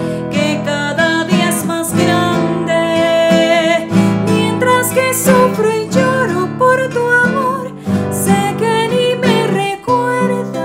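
A woman singing with vibrato to her own nylon-string classical guitar accompaniment, a Colombian pasillo.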